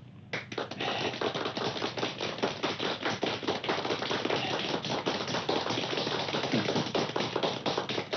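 A small group clapping: a dense, irregular patter of many hand claps a second, held at a steady level.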